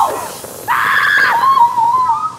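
A long, high-pitched scream that wavers in pitch. It starts about two-thirds of a second in and is held to the end.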